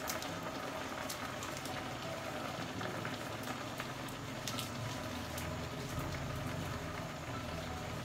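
Assorted meat sizzling and bubbling in its own juices in a stainless steel pot on the heat, no water added: a steady crackling hiss with small scattered pops over a low hum.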